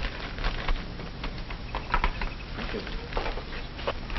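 Crackling surface noise with scattered clicks and a steady low hum, from a worn 1940s optical film soundtrack.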